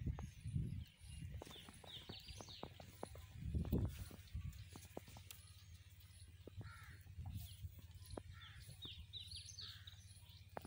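Birds chirping in short clusters of quick high calls, with a lower call between them. There are scattered small clicks, a low thud near the start, and a louder low rumble about three and a half seconds in.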